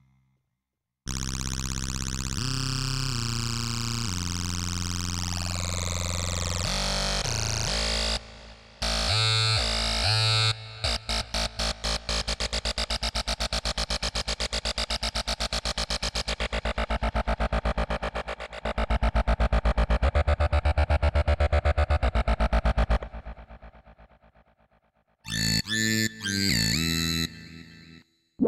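Roland System-100 software synthesizer, a recreation of the two-oscillator monosynth, playing demo patches. A sustained lead with a deep bass changes pitch and glides. Then a fast, evenly repeating string of notes fades out, and another patch starts near the end.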